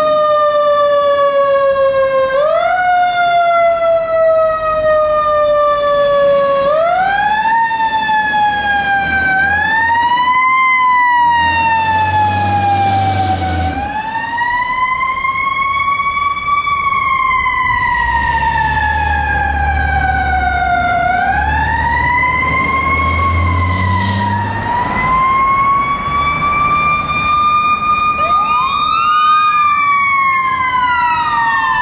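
Fire truck's mechanical siren, repeatedly wound up quickly and then left to coast slowly down in pitch. Deep, steady low blasts sound underneath at times. Near the end a second siren starts, rising fast.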